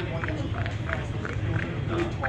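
Other people's voices talking over a steady low rumble on a ferry deck.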